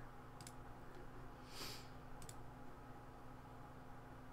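A few faint, sharp computer mouse clicks, one about half a second in and a quick double click a little past two seconds, with a short soft hiss between them over a low steady hum.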